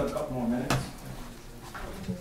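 Brief indistinct talk in a room, with a single sharp knock about two-thirds of a second in.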